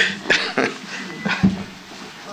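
A man getting up from a table and leaving: a few knocks, with a heavy low thump about one and a half seconds in, and a moment of laughter at the start.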